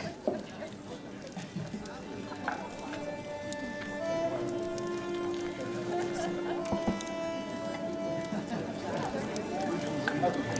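Soft film score of held, sustained notes that comes in about three seconds in, over a low murmur of background voices.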